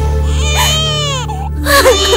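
An infant crying: one long cry that falls in pitch, a brief break, then a fresh cry starting near the end. A steady background music score plays underneath.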